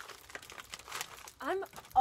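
Plastic candy wrapper crinkling as it is handled, a quick run of small crackles for about the first second.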